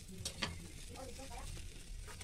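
Two light, sharp clicks of tomatoes and fingers against a small stainless-steel bowl as tomatoes are picked out, over a faint steady hiss.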